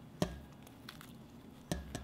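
Pomegranate seeds being picked out of the rind by hand into a stainless steel bowl: a few faint ticks, with two short knocks about a second and a half apart.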